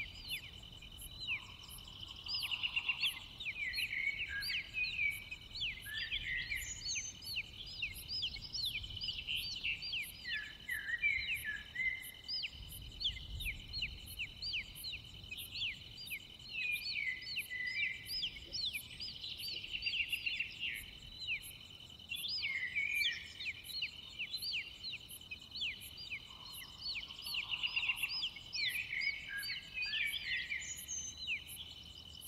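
Nature soundscape of many small birds chirping and twittering on and off throughout, over a steady high insect drone and a regular faint high pulsing.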